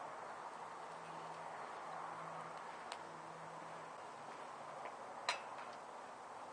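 Twig-and-stick fire in a steel-can rocket stove burning quietly with a steady rush and a few faint crackling ticks. Near the end comes one sharp metallic clink as a cast iron skillet is set down on the stove top.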